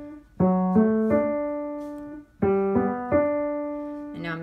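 Piano, left hand alone. A G major chord is played broken, G, B, D one after another and held. About two seconds in, the F-sharp, A, D chord follows the same way, the notes sustaining and fading. Only the lower two notes move between the two chords; D stays put.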